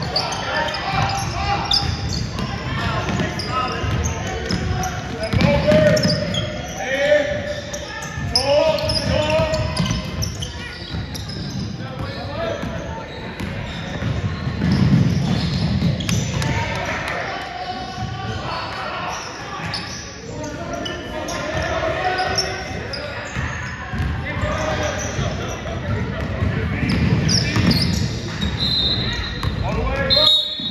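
Basketball game in a gymnasium: the ball bouncing on the hardwood court again and again amid the shouts of players and spectators, all echoing in the large hall.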